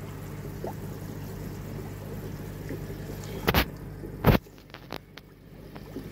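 Aquarium water trickling faintly over a steady low hum, broken by two loud knocks about three and a half and four and a quarter seconds in. After the second knock the background is quieter, with a few faint clicks.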